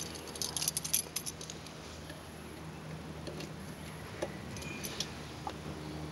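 Keys jangling and clicking, densest in the first second, then a few scattered small clicks over a faint low steady hum, as the motorcycle's ignition key is handled before the engine is started.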